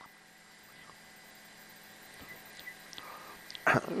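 Quiet room tone with a faint steady hum and a few small mouth sounds, then a man's short laugh near the end.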